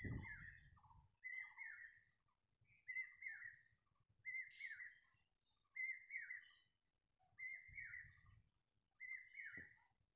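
A bird calling faintly in the background: the same short whistled phrase repeated seven times, about one every second and a half. A low rumble of handling noise at the start and again near the end.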